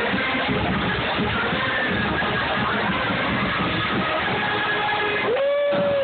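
University marching band playing amid a large, noisy crowd of cheering students. Near the end a single held note rises briefly and then holds for under a second.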